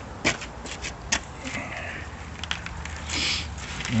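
Light handling noise: a few scattered clicks and knocks, and a brief rustle about three seconds in, over a faint low hum.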